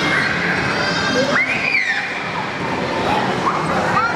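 Busy hubbub of children's voices, with one high squeal that rises and falls about one and a half seconds in.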